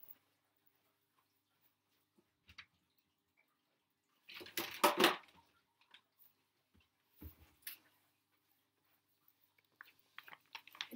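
Someone rummaging for bagged items: a short burst of rustling and handling noise about halfway through, with a few scattered knocks and clicks before and after it.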